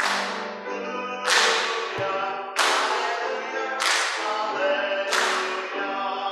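Piano music, with a sharp, crack-like hit at the start of each beat, about one every 1.3 seconds, each ringing away before the next.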